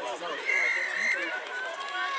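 Several voices shouting over one another from the sideline and field during rugby play, with one high held note lasting about half a second, starting about half a second in.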